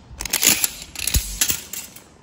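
Handling noise from a steel tape measure being pulled out and laid across a speaker's woofer: a run of clicks and scrapes, with a low thump just past a second in.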